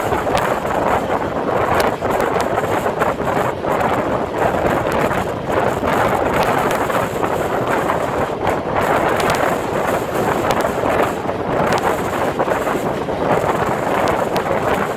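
Wind rushing over the microphone from a fast-moving passenger train, with the steady rumble of the coaches running on the rails and scattered short clicks from the wheels and track.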